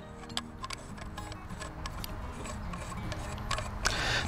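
Soft background music with faint scattered clicks and ticks of stainless steel pipe fittings being handled and threaded together.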